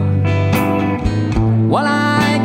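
Blues played on an archtop guitar, picked notes over a steady bass line. Near the end a note slides upward as the singer comes back in.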